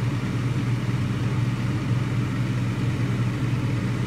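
Steady low machine hum with a constant airy noise over it.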